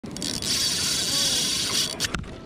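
Spinning reel's drag buzzing steadily as a hooked fish pulls line off the spool, stopping just before the end.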